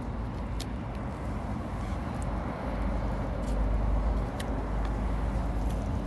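Low, steady rumble of vehicle noise, swelling louder from about three seconds in, with a few faint sharp clicks.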